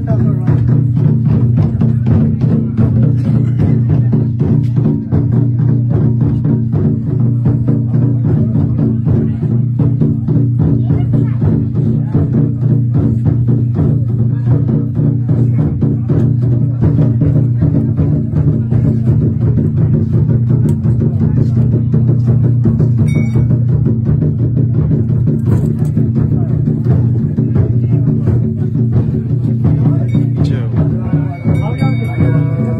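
Loud music of fast, even drumbeats over a continuous low droning tone, with a brief ringing tone about 23 seconds in.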